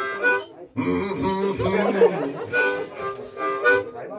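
Harmonica played into a vocal microphone: a short chordal phrase, a brief break just before one second in, then a longer run of held chords.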